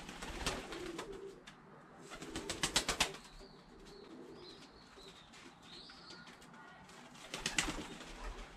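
Pigeons (Turkish tumblers) flapping their wings as they fly in and land at the loft, with a quick run of wing claps about two to three seconds in and more flapping near the end. Soft pigeon cooing between the wingbeats.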